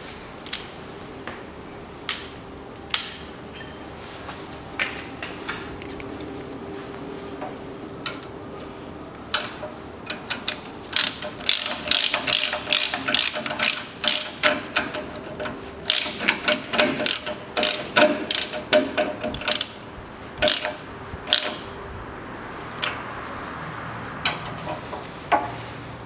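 Hand ratchet clicking while tightening the front stabilizer bar bushing bracket bolts. The clicks come in scattered bursts at first, then in dense rapid runs from about ten seconds in until a few seconds before the end.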